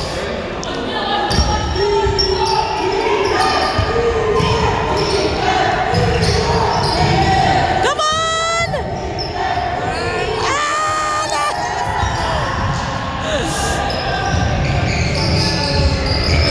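A basketball being dribbled and bouncing on a hardwood gym floor, ringing in a large hall, with players' voices. A brief, sliding high squeal comes about halfway through.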